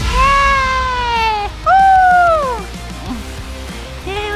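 A person gives two long jubilant shouts of "Yeah!" over background music. The second shout is higher, and each falls away in pitch at its end.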